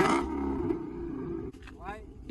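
Dodge Charger's engine revved once through its exhaust: a sharp blip right at the start, then a low rumble that dies away over about a second and a half.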